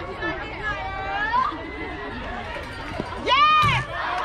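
Several voices calling and chattering, with one loud, high-pitched yell about three and a half seconds in.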